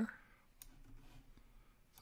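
Faint computer mouse clicks over quiet room tone: one click about half a second in and a sharper one near the end.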